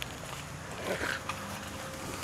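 A dog worrying a plush toy on grass: faint rustling with a couple of soft short sounds about a second in, over a steady outdoor hiss.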